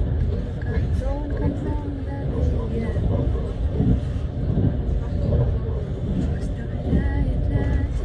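Steady low rumble of a moving vehicle heard from inside, with people talking indistinctly over it.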